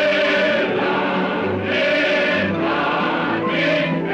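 Choral music: a choir singing over a full musical backing.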